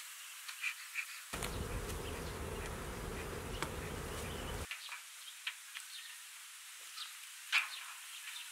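Honey bees buzzing around an opened hive as its frames are handled, with scattered light clicks and taps. A louder low rumble comes in about a second in and stops abruptly near five seconds.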